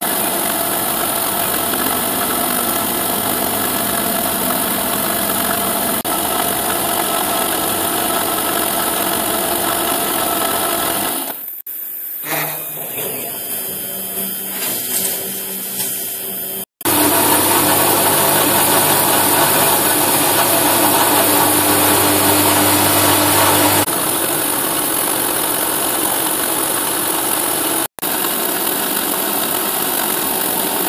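Milling machine spindle running a small 1.8 mm slot drill through a metal mould plate, with a steady machining noise. It breaks off abruptly several times and is louder, with a strong low hum, between about 17 and 24 seconds.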